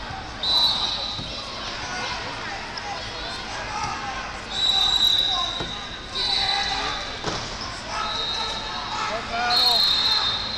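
Referee whistles blowing about five short blasts, each half a second to a second long, over the babble of voices echoing in a large tournament hall.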